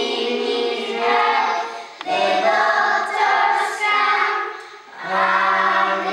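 A group of children singing an English song together in chorus, in phrases broken by short breaths about two seconds in and again near five seconds.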